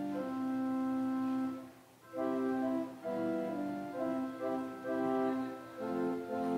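Church organ playing slow, held chords, with a short break between phrases about two seconds in.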